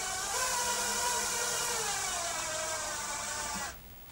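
Power drill driving a screw up into a wooden fence, its motor running steadily and slowing a little in pitch in the second half as the screw goes in, then stopping just before the end.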